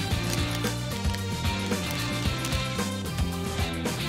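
Background music with steady instrumental notes and a regular beat.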